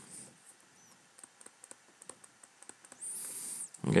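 Digital pen working on a touchscreen: faint light taps, then a brief high-pitched squeak about three seconds in.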